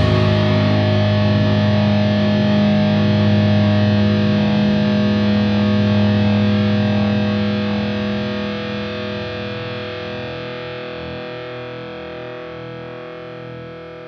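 Hardcore band's last chord on distorted electric guitar, held and left to ring out, slowly fading; its lowest notes die away about ten seconds in.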